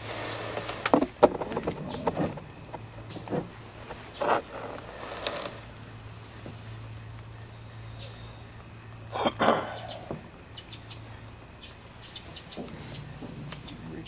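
Scattered rustles and knocks of a bulky costume being handled and put on close to the microphone, loudest about a second in and again about nine seconds in, with faint insects chirping behind.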